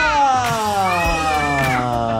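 A child's long, drawn-out vocal cry, sliding slowly down in pitch, as a Jenga tower collapses.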